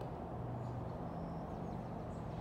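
Steady low background noise with a faint, even low hum; no distinct event.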